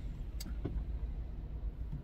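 Low, steady rumble of a car heard from inside the cabin, with a faint click about half a second in.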